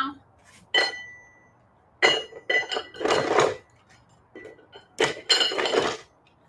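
Adjustable dumbbell being set to a lighter weight, its metal plates clinking and clattering. There is a sharp clink about a second in that rings briefly, then clattering from about two seconds in and again near the end.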